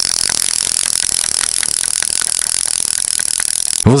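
Spinning reel cranked quickly and steadily, winding braided fishing line onto the spool: a fast, even whirring that starts and stops abruptly.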